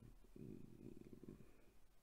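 Near silence: quiet room tone, with a faint low rattling murmur from about half a second to a second and a half in.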